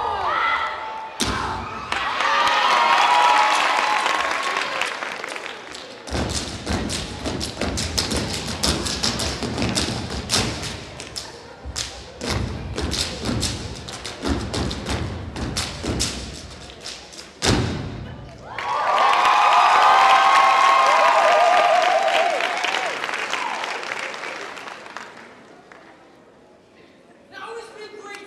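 Audience screaming and cheering, then about eleven seconds of fast, rhythmic thumps and claps from the dance team's routine on stage. Loud cheering and screaming follow again, fading away near the end.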